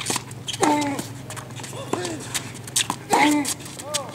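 Tennis ball struck back and forth in a rally on a hard court: several sharp racquet hits and ball bounces, with short arched pitched sounds in between.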